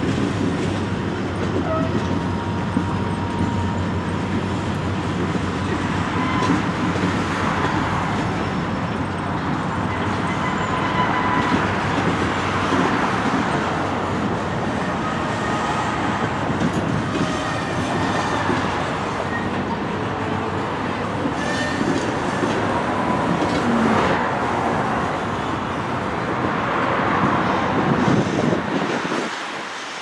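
Freight train of boxcars and covered hoppers rolling past, a steady rumble of steel wheels on the rails. The sound drops away suddenly near the end.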